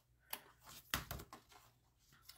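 Scissors snipping notches out of the score lines of a folded cardstock box base: a few faint, short, sharp snips, the two clearest about two-thirds of a second apart.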